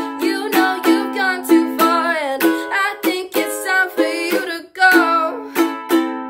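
Ukulele strummed in a steady rhythm, about three strums a second, with chords ringing between the strokes. A voice sings along over parts of it.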